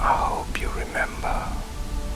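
A whispered voice over ambient music, with a low steady pulse and held tones underneath.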